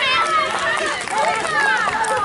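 Many spectators' voices overlapping, calling out and cheering the runners home, some of them high-pitched children's voices.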